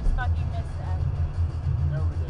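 Steady low rumble of a car's road and engine noise heard from inside the cabin while driving at highway speed.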